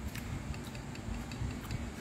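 Faint, irregular wet clicks of close-up chewing with the mouth, over a low room hum.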